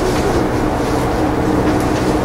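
Steady low mechanical hum with hiss, unbroken, from room machinery, with a faint tick near the end.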